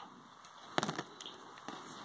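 Hard plastic action-figure legs being handled and pulled from their sockets in the figure's back: a few faint, sharp plastic clicks about a second in, over light handling noise.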